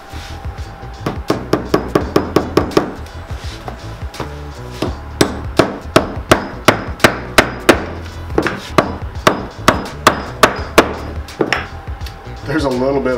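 Small cobbler's hammer tapping nails into a shoe's heel, in two runs of quick, light, sharp strikes: a short run about a second in, then a longer one of about three strikes a second.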